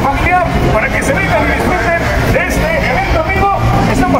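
People talking, voices overlapping, over a steady low hum.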